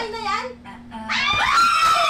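A woman's excited voice saying 'Ayan na yan!', then, about a second and a half in, a group of young women breaking into loud, high-pitched screams of excitement.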